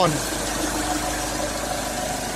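2011 Mitsubishi Triton's DI-D turbodiesel idling steadily and evenly, with no knocking or rattling: the engine is running smoothly.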